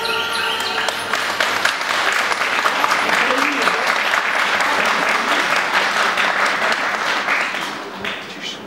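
Studio audience applauding as the dance music ends, with some voices mixed in. The clapping fades out near the end.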